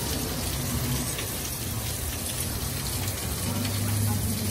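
Heavy rain falling steadily, a dense, even hiss of drops.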